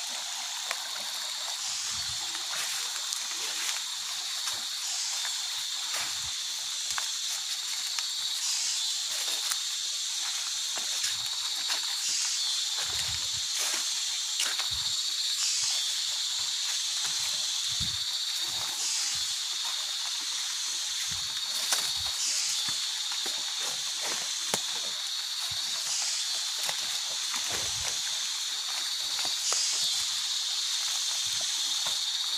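Dense rainforest insect chorus, a steady high shrill that swells about every three and a half seconds, with soft footsteps in wet mud and shallow water.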